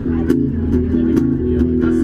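Guitar strumming the chords of a country song, with a steady run of strokes.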